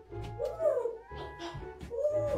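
African grey parrot giving meow-like calls in imitation of a cat, with a few sharp clicks between them.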